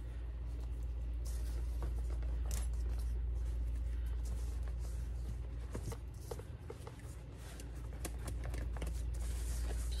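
A cloth rubbing and scrubbing on a leather purse strap and its metal buckle, a soft rustling with scattered light clicks, over a steady low hum.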